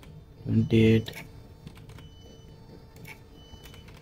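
A few computer keyboard keystrokes, sparse separate clicks, as a number is typed into a spreadsheet cell.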